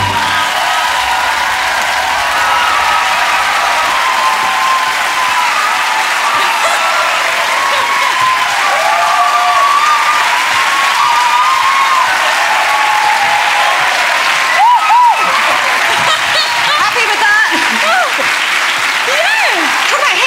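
Studio audience applauding loudly and steadily, with voices calling out and talking over the clapping, more of them near the end.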